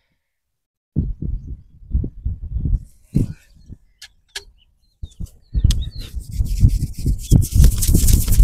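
Hands rubbing and scrubbing vigorously through a man's hair and scalp close to the microphone. Muffled low thumps start about a second in and grow near the end into a dense, scratchy rustle of hair.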